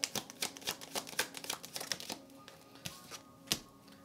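A deck of tarot cards being shuffled by hand: a quick run of crisp card clicks for about two seconds, thinning to a few single clicks after that.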